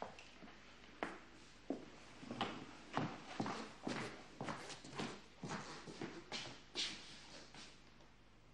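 Footsteps of a man walking across a wooden floor, sharp hard steps about two a second, stopping near the end.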